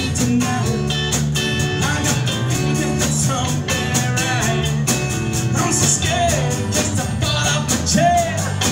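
Live rock band playing with a steady drum beat: electric and acoustic guitars, electric bass and drum kit, with a lead singer.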